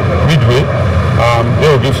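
Steady low engine-like hum, with a man's voice coming in short, halting fragments over it.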